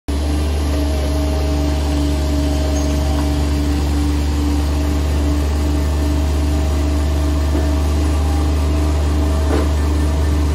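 Bobcat MT100 mini track loader's diesel engine running steadily with a deep, even hum while the machine is driven.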